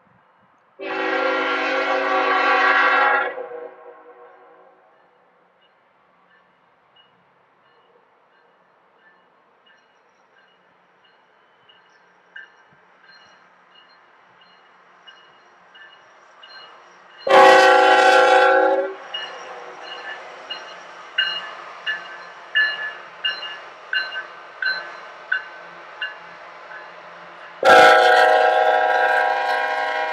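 Union Pacific diesel freight locomotives sounding their multi-note air horn in three blasts: a long one about a second in, a shorter one midway, and another starting near the end. Between the second and third blasts, the wheels click in a steady rhythm over the rails as the locomotives pass.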